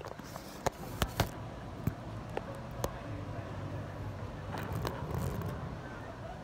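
Handling noise from a camera on a selfie stick: a string of sharp knocks and clicks in the first three seconds as it is moved and gripped, the loudest right at the start. Under it runs a steady low hum of traffic.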